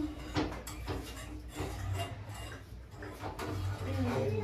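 Light knocks and clicks of plastic bottles being grabbed and bumped by a toddler, a few scattered taps, over a low steady hum.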